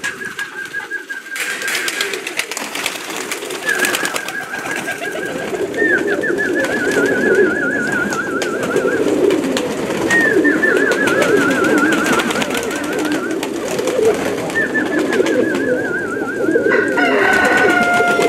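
A flock of domestic sport pigeons cooing, many at once, with scattered clicks. A high warbling whistle comes and goes about five times over it, each time for a few seconds.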